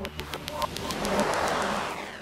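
KG Mobility Torres SUV heard from outside as it drives towards the camera: road and tyre noise swells to a peak and then fades, with a bird calling.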